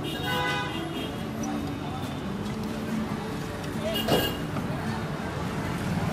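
Busy roadside street ambience: traffic noise with people's voices in the background, a vehicle horn sounding briefly near the start, and a short loud sound about four seconds in.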